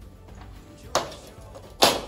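Two sharp metal knocks about a second apart, the second louder with a short ring: a stainless-steel lid clamp ring being handled and set down on a wooden floor.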